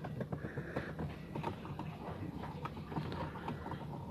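Scattered light clicks and knocks of the plastic dash bezel and factory stereo of a first-generation Toyota Vios being tugged by hand. The panel does not come free because a screw is still holding it.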